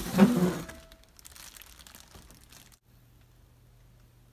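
Clear plastic packing wrap crinkling and rustling as a hand digs through it in a cardboard box, loudest in the first second and then quieter. It stops abruptly near the end, leaving a quiet low hum.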